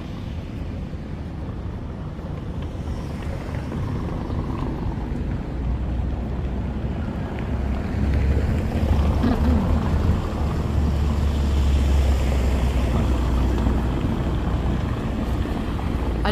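Wind buffeting the microphone: a low, steady rumble without pitch that grows stronger about halfway through, over faint outdoor street ambience.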